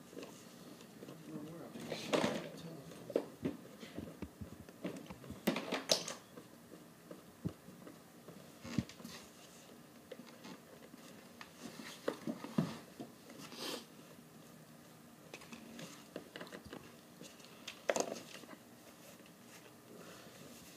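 Handling noises from a refrigerant identifier and its hard plastic case as it is unpacked: scattered plastic knocks, clicks and wrapper rustling, with sharper knocks about two, six, thirteen and eighteen seconds in.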